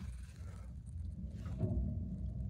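Low, steady background hum with nothing else standing out.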